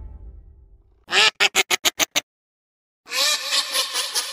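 Duck quacking sound effect: a quick run of about seven quacks, then after a short pause a longer, busier stretch of quacking. The tail of the intro music fades out during the first second.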